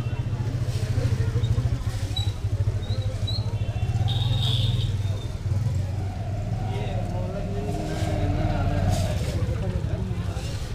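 Busy market-lane street ambience: a motor vehicle engine running steadily close by, under people's voices talking in the background. A few short high-pitched tones sound over it early and again about halfway through.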